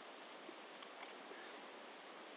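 Faint, steady outdoor hiss of early-morning ambience, with a brief high-pitched squeak about a second in.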